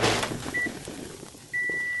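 A fading crash of breaking things, then two high, steady electronic beeps: a short one about half a second in, and a one-second one starting near the end.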